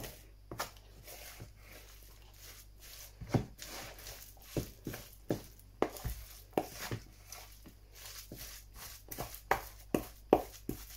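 A wooden spoon stirring a thick grated-courgette batter in a mixing bowl: soft wet scraping, with irregular knocks of the spoon against the side of the bowl, roughly one a second.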